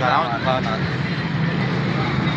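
Minibus engine idling steadily, with a voice talking over it in the first second.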